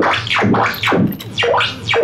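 Bastl SoftPop synthesizer playing a bubbly, burbling patch in repeated swoops, about two a second. Its sound is modulated by an envelope that follows a hippo's mouth opening and closing.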